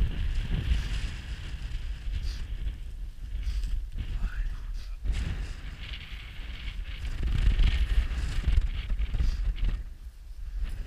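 Wind buffeting an action camera's microphone on open prairie: a heavy, gusting low rumble with a hiss over it, strongest for a couple of seconds near the end.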